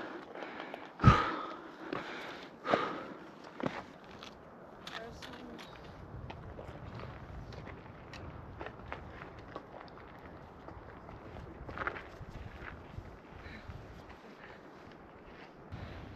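Footsteps on rocky, gravelly ground: a few sharp crunches and knocks in the first four seconds, the loudest about a second in. After that only a faint, even outdoor background with the odd small click remains.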